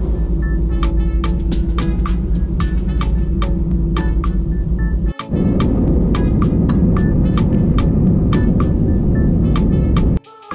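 Jet airliner heard from inside the cabin on the runway: a loud, steady engine hum, then after about five seconds a louder, rougher rumble as the aircraft rolls for takeoff. Background music with a steady beat plays over it.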